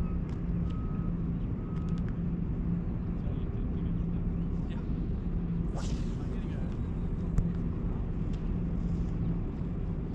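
Steady low engine drone from harbour traffic, with a vehicle's reversing alarm beeping a few times about a second apart in the first two seconds. A brief high hiss comes about six seconds in, and a single click a little later.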